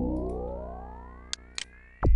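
Synthesizer bass sweep playing back: a low held note whose overtones glide steadily upward while it fades away, with two short ticks near the end.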